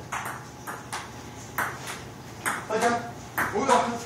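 Table tennis rally: the celluloid ball clicking sharply off the paddles and the table in a quick back-and-forth series of strikes.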